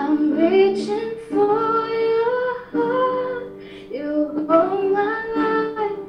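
A slow worship hymn being sung in long, held notes, in phrases separated by short breaks.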